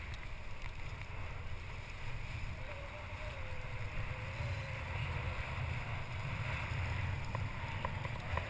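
Steady wind rumble on an action-camera microphone over open sea, with water washing against a boat, a faint wavering whine through the first half and a few faint ticks near the end.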